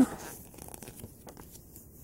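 Faint rustling and light ticks of a thin paper comic booklet being closed and turned over by hand.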